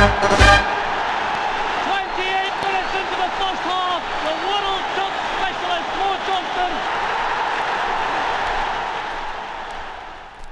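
The song's last chord cuts off about half a second in. Then comes a steady crowd noise with short shouted calls from many voices, which fades out near the end.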